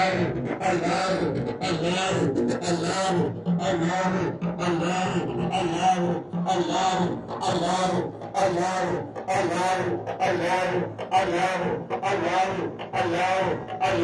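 A large crowd of men chanting together to a steady rhythm of about two beats a second, each beat with a raspy, breathy burst.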